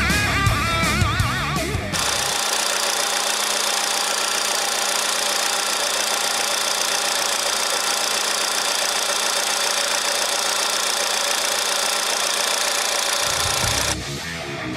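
Guitar music for about the first two seconds, then the 1.6-litre four-cylinder engine of a 2020 Volkswagen Polo running steadily at idle, with no revving, until the music returns near the end.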